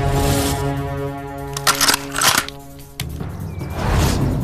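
Tense orchestral film score holding a sustained chord, with two short clusters of sharp cracks, like gunshots, about half a second apart a little under two seconds in. After the cracks the music sinks to a low, darker drone.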